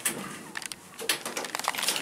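Several short clicks from an Innovation Universal pushbutton on the elevator car's panel being pressed to register a floor call.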